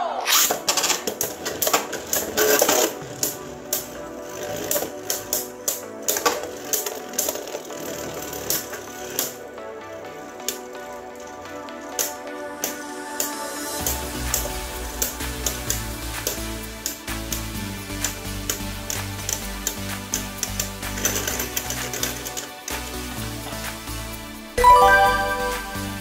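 Background music over many sharp clicks and clacks of two Beyblade Burst spinning tops launched into a plastic stadium and striking each other and the stadium wall. A deeper bass layer joins the music about halfway through, and a brighter pitched sound comes in shortly before the end.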